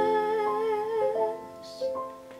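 Soprano humming a long note with vibrato over sustained upright piano chords. The voice stops about a second and a half in, followed by a quick intake of breath and a new piano chord near the end.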